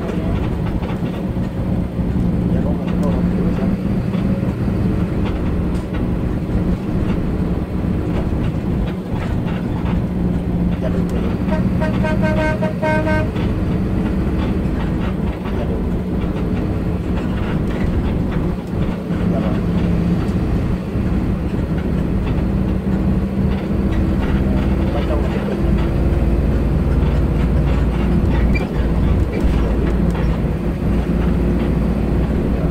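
Steady low engine drone and road noise inside a moving coach bus. A vehicle horn sounds once for about a second and a half, a little before halfway through.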